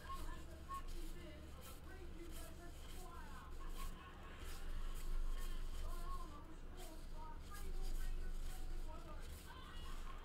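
Baseball trading cards being flipped by hand through a stack, one after another, with soft scattered clicks and slides of card on card. Faint voices run underneath.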